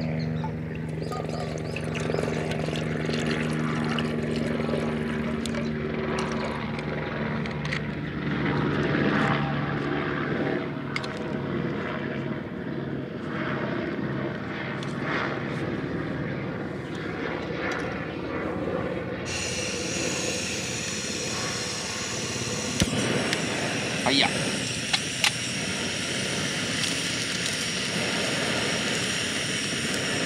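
A low engine drone made of several steady tones fades out over the first eight seconds. About two-thirds of the way through a steady high hiss comes in, and a few sharp clicks and taps follow.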